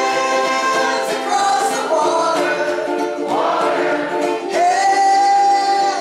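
A large ukulele ensemble strumming chords together while voices sing the melody, with one long held note near the end.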